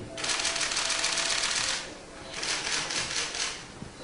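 Press cameras' shutters clicking in rapid bursts, two runs of about a second and a half each, the second a little fainter.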